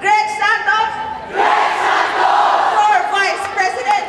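A woman shouting a rallying cry through a microphone and PA. From about a second and a half in, a crowd cheers and yells back, and the shouting voice returns near the end.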